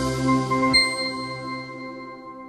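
Closing logo jingle of bell-like chime tones: a held chord whose bass drops out as a bright high ding sounds about three quarters of a second in, then the tones ring on and fade away.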